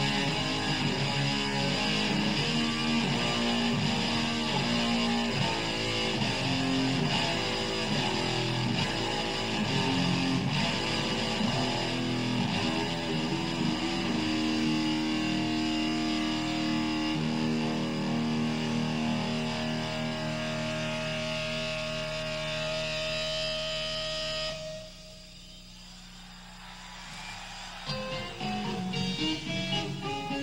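Electric guitar solo played live: quick runs of notes, then long sustained notes from about halfway. It drops suddenly to a quiet low held tone a few seconds before the end, then picks up again.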